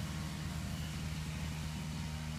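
Steady low hum of an engine or motor running in the background, one unchanging tone.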